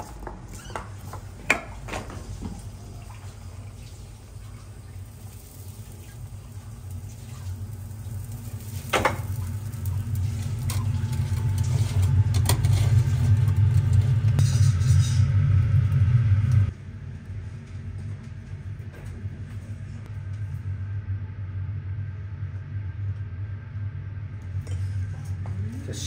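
Kitchen noise at a charcoal grill while skewered fugu milt is handled and grilled: a steady low rumble that builds and then cuts off suddenly about two-thirds of the way through, with a few sharp clicks of metal skewers and utensils, one a couple of seconds in and one about nine seconds in.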